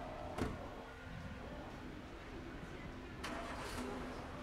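A single sharp bang about half a second in as an electric scooter is brought down hard, over a steady background of street noise, followed by a brief rushing noise a little after three seconds.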